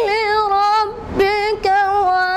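A single high voice chanting unaccompanied in the sozkhwani style, in long held notes that waver in pitch, with a short breath break about a second in.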